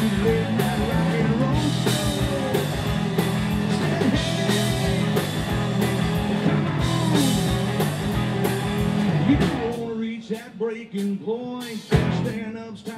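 Live rock band playing an instrumental passage with three electric guitars, bass and drums, with bending guitar lines over a driving beat. About ten seconds in, the bass drops out, leaving a choppy electric guitar riff over the drums.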